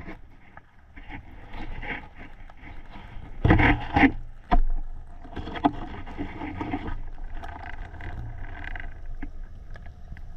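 Muffled underwater sound through a camera housing: water rushing and rustling with irregular knocks, the loudest burst about three and a half seconds in.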